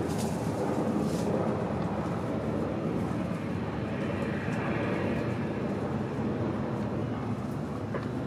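Steady low rumble of distant engine noise, a background drone with no distinct bird calls.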